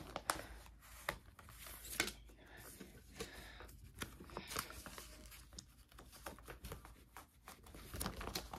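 Clear plastic pocket pages of a trading-card binder crinkling and rustling as cards are slid out of their sleeves: a run of short, irregular, faint crackles.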